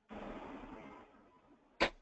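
A short burst of rushing noise that starts suddenly and fades away over about a second and a half, followed near the end by a brief vocal sound just before speech.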